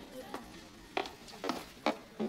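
Light glass clinks as a glass bottle and a drinking glass knock together, four short clinks spread over two seconds.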